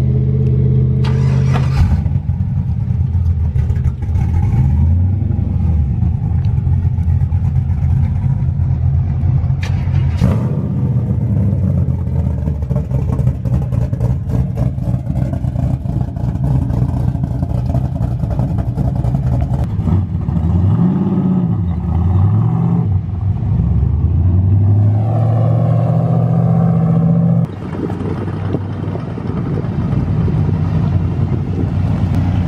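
Cammed V8 pickup truck engines idling loudly, with the throttle revved up and back down several times. The level drops suddenly near the end.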